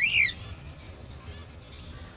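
Cockatiel giving one short, loud whistled call that rises and then falls in pitch, followed by a fainter call about a second and a half later.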